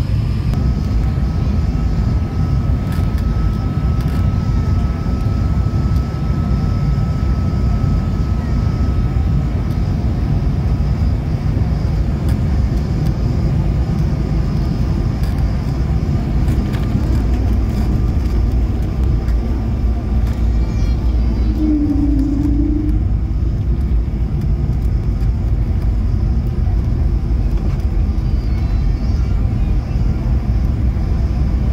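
Cabin noise of an Airbus A220-300 landing, heard from a window seat: a steady, loud rumble of airflow and its Pratt & Whitney geared turbofan engines through final approach and the roll along the runway after touchdown. A short tone sounds briefly over the rumble about two-thirds of the way through.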